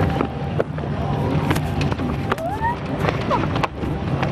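Two riders going down a giant multi-lane fair slide: a steady sliding rumble with scattered small bumps over fairground noise, and a short rising voice about two and a half seconds in.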